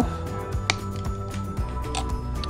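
Background music with steady held tones. A single sharp snip less than a second in: side cutters cutting through the kinked end of steel MIG welding wire.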